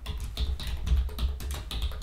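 Rapid typing on a computer keyboard: a quick, irregular run of key clicks over a low steady hum.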